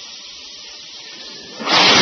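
Space Shuttle Discovery's three liquid-fuelled RS-25 main engines igniting on the pad. A steady hiss gives way, about one and a half seconds in, to a sudden loud rush of rocket noise that keeps going.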